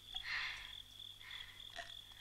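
Faint night ambience: a steady, high insect drone with a few short frog croaks.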